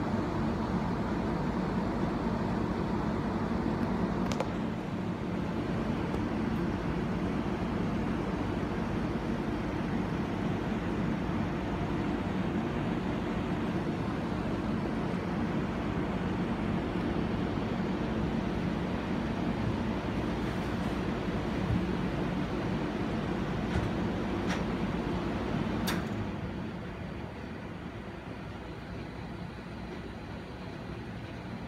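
Outdoor condenser unit of a Saijo Denki split-type air conditioner running with a steady low hum and fan noise. A faint higher tone stops about four seconds in, and the sound drops off noticeably near the end as the unit shuts down.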